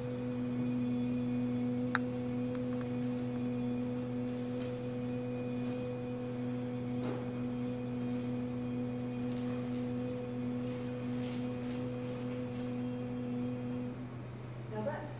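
A single steady low tone, held at one pitch without a break and stopping abruptly at the end, over a constant faint background hum; a small click about two seconds in.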